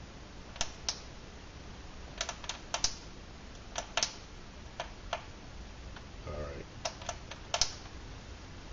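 Buttons on a digital kitchen scale being pressed, about a dozen short sharp plastic clicks in small groups of two or three.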